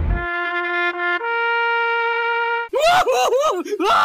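Comedy-edit sound effects: a noisy splash-like crash cuts off just after the start. Then comes a brass-like horn holding two notes, the second higher, and about two and a half seconds in, cartoon-voice laughter of Homer Simpson bursts in.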